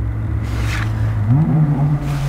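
A motor vehicle engine running with a steady low hum, rising in pitch a little past the middle as it speeds up.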